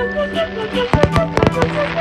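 Fireworks bursting overhead: a cluster of sharp bangs in quick succession in the second half, over music playing a melody.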